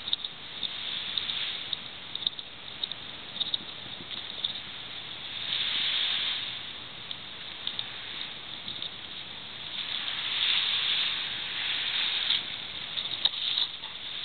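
Hissing wash of small sea waves on a beach, swelling up and fading twice, with scattered light ticks throughout.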